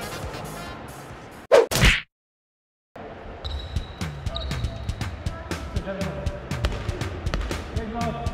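Background music fades out, and about a second and a half in a short, loud swoosh sound effect marks a cut, followed by a second of dead silence. Then music starts again under the sharp slaps and bounces of a volleyball being played in a large gym.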